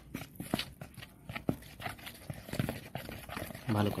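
A metal spoon clicking and scraping against the bowl in irregular strokes as gram flour and spices are stirred into a batter.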